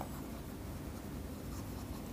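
Faint scratching of a stylus writing a word on a tablet.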